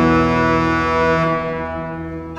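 Pipe organ holding a sustained chord at the close of a hymn stanza; the upper notes drop out about a second and a half in and the sound fades, before the next stanza begins.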